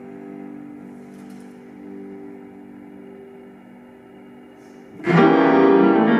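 Cello and piano playing classical music: soft, sustained notes held quietly, then a sudden loud entry of both instruments about five seconds in.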